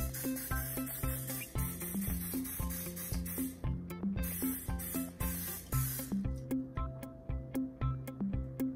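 Background music with a steady beat, over the hiss of an aerosol cooking spray in two long bursts, the second ending about six seconds in.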